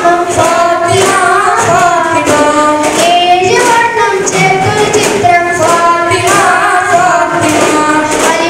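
A group of boys singing an Islamic devotional song in chorus, with regular strikes on daf frame drums keeping the beat.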